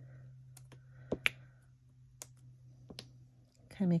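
A handful of sharp, scattered clicks and taps as a putty-tipped pick-up tool lifts small adhesive dots off their paper sheet and presses them onto cardstock, over a faint steady hum.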